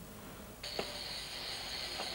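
Faint workshop ambience: a steady hiss comes in a little over half a second in, with one light click shortly after.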